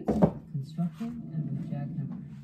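A single knock as a drywall panel is set down onto a wooden test frame, followed by muffled street noise with voices, played from a speaker inside the wall cavity behind the plain, uninsulated drywall.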